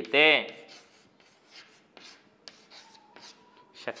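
Chalk writing on a chalkboard: a run of faint scratches and light taps as the strokes of a word are written.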